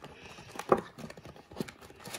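Cardboard hobby box and card packs being handled: a few light knocks and taps, the loudest about a third of the way in.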